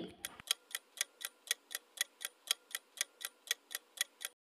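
Clock-tick sound effect of a quiz countdown timer: short, sharp, evenly spaced ticks, about four a second.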